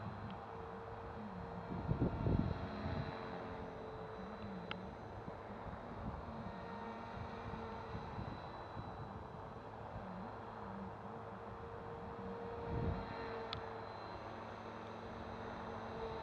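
Electric 450-size RC helicopter in flight: a steady whine from motor and rotor, with lower tones that waver up and down as it manoeuvres. Two brief rumbles of wind on the microphone come about two seconds in and about three seconds before the end.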